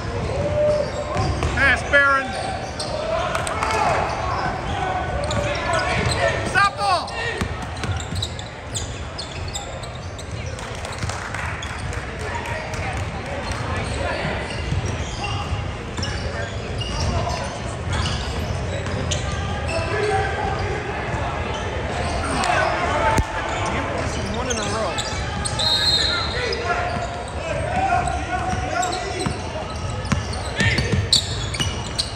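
Basketball being dribbled on a hardwood gym floor, with sneakers squeaking and a steady chatter of players' and spectators' voices echoing around a large gymnasium.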